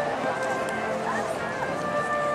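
Concert band of brass and woodwinds holding soft sustained chords, with people's voices talking over the music.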